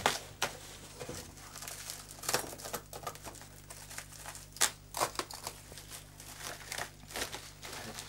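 Plastic bubble wrap crinkling in irregular bursts as it is pulled and cut open from around a packed object, with a few sharper crackles.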